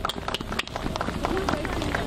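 Crowd applauding, the separate hand claps distinct and irregular, with a few voices among them.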